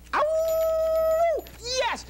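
A long howl held on one steady pitch for over a second, dropping away at the end, followed by a short rising-and-falling yelp.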